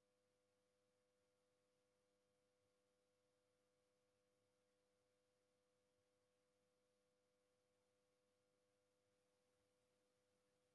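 Near silence: only a faint steady tone in the recording's background.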